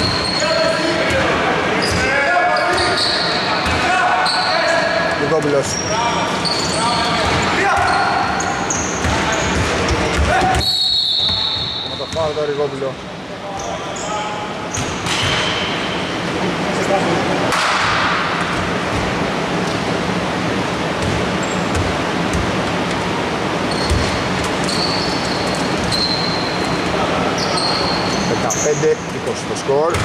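Basketball game in play on an indoor court: the ball bouncing as it is dribbled, with short high squeaks of sneakers on the floor, in a large echoing hall.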